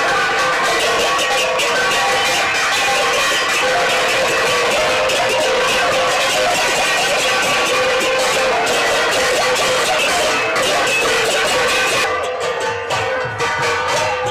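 Several hand-held bell-metal gongs (ghanta) beaten rapidly with wooden sticks: a dense, continuous clanging with a steady metallic ringing. About two seconds before the end the sound thins and becomes quieter and duller.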